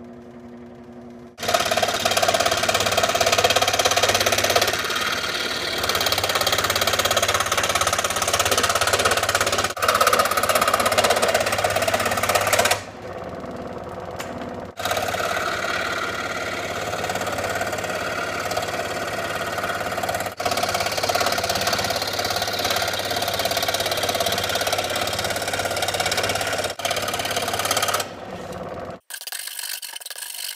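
Ryobi 16-inch variable-speed scroll saw running, its reciprocating blade cutting thin sheet stock into batarang shapes: a steady, loud buzz with a constant low hum. It starts about a second and a half in, eases off for a couple of seconds midway, and stops about a second before the end.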